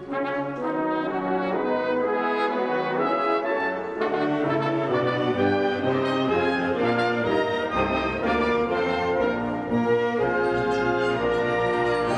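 Full concert wind band playing, with the brass, French horns among them, to the fore in sustained chords and moving lines; the band comes in together with a sharp attack at the start.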